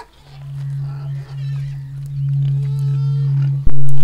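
A low, steady droning tone that fades in and slowly grows louder, with faint higher calls above it. A sudden loud hit comes near the end, and the drone carries on at full loudness after it.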